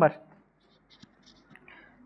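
Faint small clicks and handling noise from a phone and a whiteboard marker being picked up and held.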